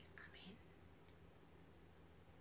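Near silence: room tone with a low steady hum, and a faint breathy sound in the first half-second.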